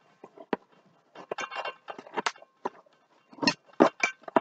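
A boxed ceramic coffee mug being unpacked: a cardboard box and plastic wrapping handled, with irregular crinkling and rustling and a sharp click about half a second in.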